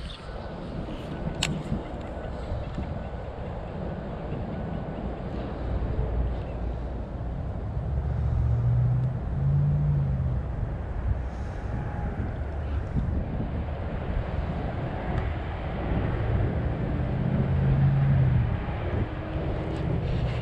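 Wind buffeting the microphone: a low, gusty rumble that swells and fades, with stronger gusts about eight seconds in and again near the end.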